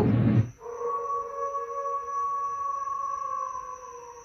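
A low boom at the very start, then a sustained drone of several steady tones that slowly fades: the closing sound of the music video's soundtrack.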